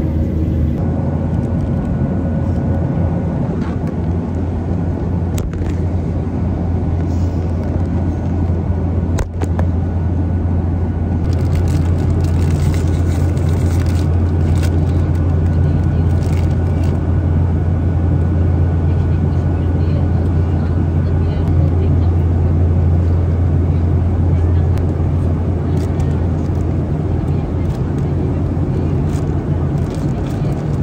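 Steady drone of a jet airliner's cabin in flight: turbofan engines and airflow noise. A snack packet rustles and crinkles as it is opened around the middle.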